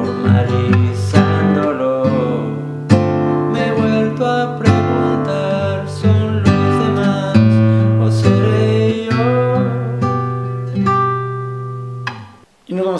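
Nylon-string classical guitar strummed with the fingers, playing a G major chord with its bass walking up through A and B and resolving to C major. The last chords ring and fade toward the end.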